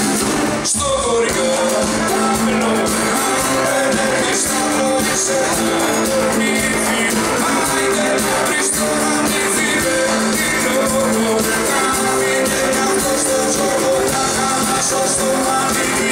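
Live band music: a male voice singing over an acoustic guitar and band accompaniment.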